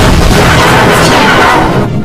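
Many distorted copies of a logo's soundtrack playing over each other at once, heavily clipped into a loud, harsh, dense din. It eases off briefly near the end.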